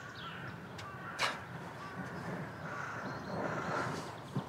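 Outdoor ambience with birds calling in the background, and a single short sharp knock about a second in.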